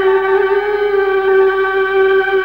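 One voice holding a single long, steady note in the sung recitation of a Khmer Buddhist educational poem.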